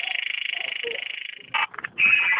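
Electronic Dalek sound effect: a fast-pulsing high buzz that fades away over about a second and a half, followed by a few short bursts near the end.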